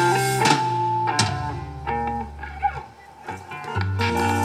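Live rock band: electric guitar and bass guitar holding sustained notes, thinning out to a quieter break about three seconds in, then the full band comes back in near the end.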